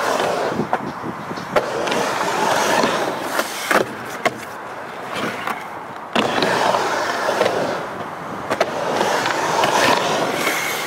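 Skateboard wheels rolling across a halfpipe ramp, the rumble swelling and fading as the skater rides up and down the walls. Several sharp clacks come from the board and trucks striking the coping.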